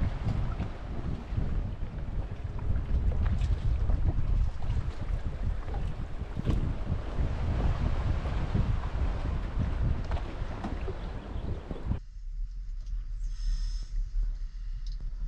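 Wind buffeting the microphone of a camera on a moving boat at sea, a loud gusty rumble mixed with the rush of water. Near the end it cuts abruptly to a much quieter sound.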